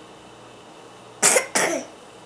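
A baby's two short, breathy laughs close to the microphone, the second falling in pitch.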